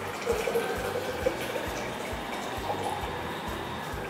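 Hands kneading noodle dough in a stainless steel bowl at a kitchen sink, over a steady watery hiss with soft low thumps.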